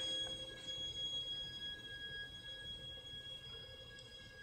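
Classical guitar and violin playing very softly: a few held notes ring on and slowly fade away in a quiet passage.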